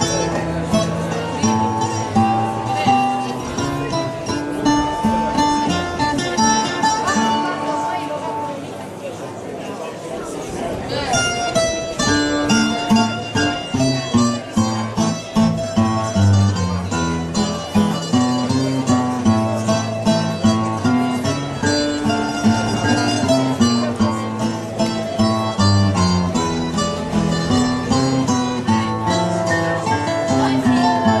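Plucked acoustic guitars playing the instrumental accompaniment between verses of an Azorean cantoria ao desafio, a sung improvised duel. The playing thins out and drops in volume for a few seconds about a third of the way in, then comes back fuller.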